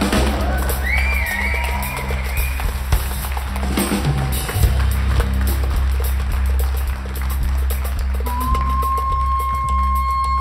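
Live instrumental music from a large ensemble mixing Arabic and Western instruments: a steady drum-kit groove over a deep sustained bass, with a wavering high melody line in the first couple of seconds. Near the end a wind instrument enters on one long held note.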